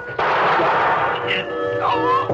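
A single gunshot sound effect goes off a fraction of a second in and rings on for about a second, loud over classical music playing at high volume.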